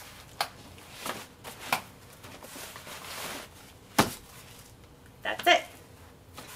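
Bugaboo Stardust travel cot being folded by hand: a few light clicks and knocks from its frame, a soft rustle of fabric, and a sharp click about four seconds in as the frame collapses.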